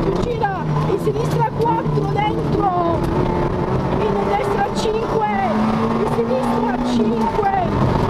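Peugeot 106 rally car engine heard from inside the cabin, pulling hard through the revs and shifting, with a steady held note in the second half and sharp clicks and knocks from the car over the stage. A voice, the co-driver's, talks over it.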